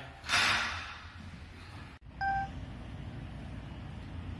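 A brief loud rushing noise, then after a sudden break a single short electronic beep over a low steady background hum.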